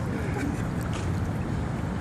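Pool water sloshing and lapping close to the microphone as a swimmer floats, a steady noisy wash with a low rumble.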